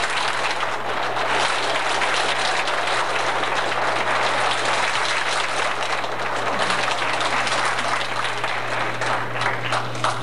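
Audience applauding steadily, the clapping dying away near the end.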